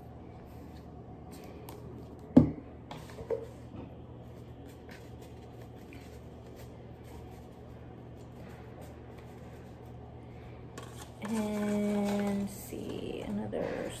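Quiet handling of paper and a cardboard tube on a wooden table, with one sharp knock about two seconds in as the plastic glue bottle is set down. Near the end, a person hums one steady note for about a second.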